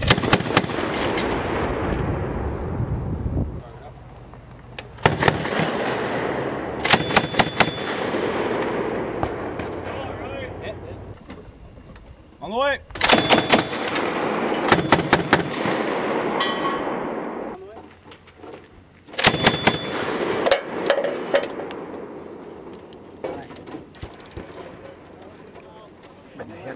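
Mk 19 40 mm belt-fed automatic grenade launcher firing several short bursts of a few rounds each, the rounds coming in quick succession. Each burst is followed by a long rolling echo that dies away over a few seconds.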